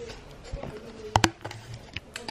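Camera handling noise as the camera is picked up and turned: a few light knocks, then two sharp clicks a little over a second in.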